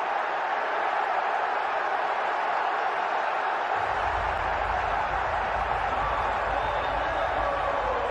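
Large football stadium crowd cheering a goal that settles the match, a steady wall of voices; a low rumble joins about halfway through.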